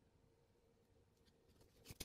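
Near silence: faint room tone with a low steady hum, then a couple of soft knocks near the end as a silicone pyramid mold is handled on the table.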